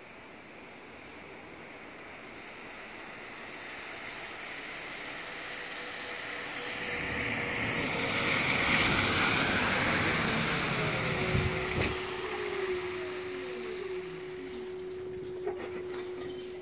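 Electric city bus approaching and pulling in close by on a wet road. Its tyre and road noise swells to its loudest about eight to ten seconds in. Falling whines follow as it slows, and a steady hum holds once it stands at the stop.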